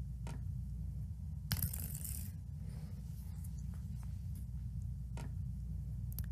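A small ball flicked across a tabletop: a short scraping rush about a second and a half in, with a few light taps over a low, steady room hum.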